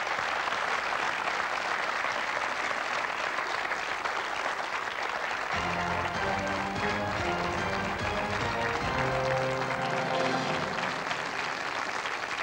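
Studio audience applauding steadily, with game-show music coming in about halfway through and playing under the applause.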